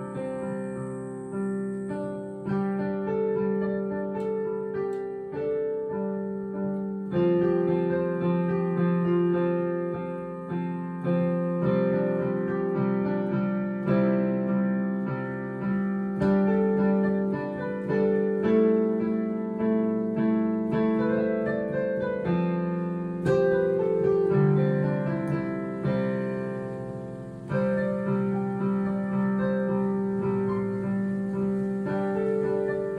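Digital piano played with both hands, a made-up tune over a repeating four-chord progression: held chords in the lower middle range with single melody notes on top, each chord struck and left to fade before the next.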